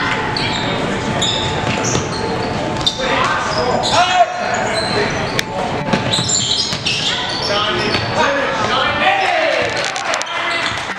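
Basketball bouncing on a hardwood gym floor as a player dribbles, amid voices in the echoing gym.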